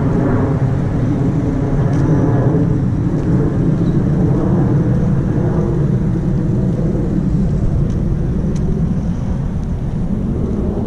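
Steady low rumble of outdoor city street ambience with road traffic, heavy in the bass, with a few faint ticks.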